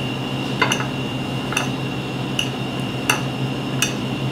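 Hands mixing grated boiled potato on a ceramic plate, with about five light, sharp clicks spread through, over a steady background hum.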